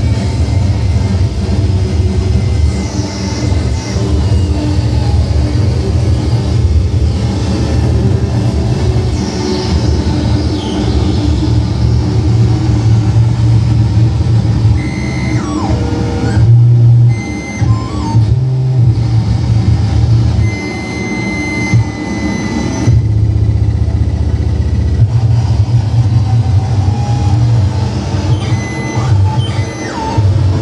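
Live improvised harsh noise from a tabletop electronics rig: a loud, dense low rumble with short high tones scattered through it. It cuts out and shifts abruptly several times a little past the middle.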